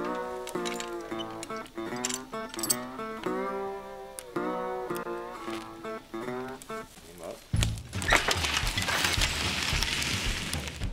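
Background music: a melodic passage of held, bending notes. About seven and a half seconds in it switches to a fuller, noisier section with low thuds.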